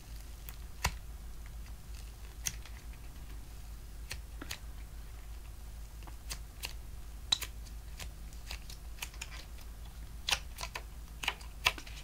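Fingers squeezing and kneading a flour-filled rubber balloon squeeze toy, giving scattered, irregular faint clicks and taps as fingertips and nails press and slip on the rubber.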